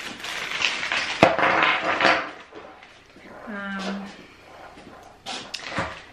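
Clear plastic bag crinkling as it is opened and unwrapped, with a sharp click about a second in. About halfway through comes a short hummed 'mm' from a voice, and a couple of sharp clicks near the end.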